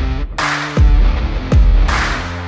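Electronic music track: deep bass kicks that drop in pitch, a sharp noisy hit about half a second in and another near the end, over steady synth notes.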